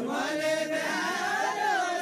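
A group of dancers singing a deuda folk song together without instruments. A single chant-like melody line rises and falls.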